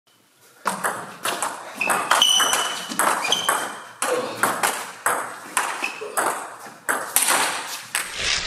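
A fast table tennis rally: the ball clicking off the paddles and bouncing on the table, about three sharp knocks a second, each with a short ring and echo from the large hall.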